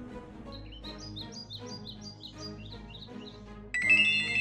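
Birds chirping in a quick series of short calls over soft background music; near the end a mobile phone's ringtone starts suddenly and loudly.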